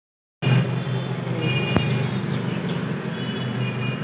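Outdoor urban background: a steady traffic rumble with faint, intermittent high tones. It starts abruptly about half a second in, and there is one sharp click about two seconds in.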